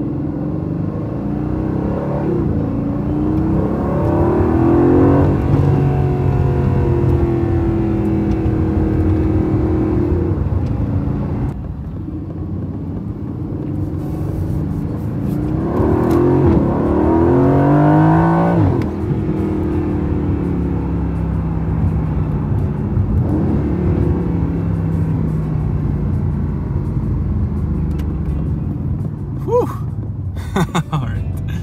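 Aston Martin Vantage's twin-turbo V8 heard from inside the cabin. It pulls hard twice, its pitch climbing and then dropping away at a gear change, and holds a steady drone at cruise in between.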